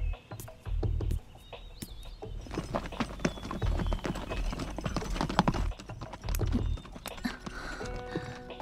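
Horse hooves clip-clopping as a horse-drawn carriage travels, starting about two and a half seconds in, over background music.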